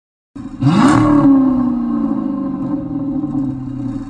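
Car engine rev sound effect: one quick climb in pitch with a burst of hiss about half a second in, then a slowly falling tail as it winds down.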